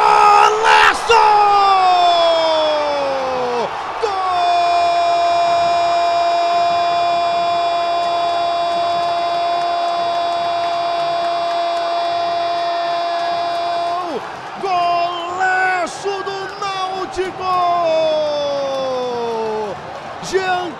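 Football commentator's drawn-out goal cry, 'Gooool!', over a cheering stadium crowd. A falling shout opens it, then one note is held for about ten seconds, and near the end come shorter shouted calls and another long falling cry.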